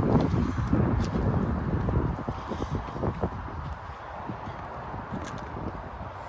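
Wind rumbling on the microphone, with scattered footsteps on the road, the rumble easing about halfway through.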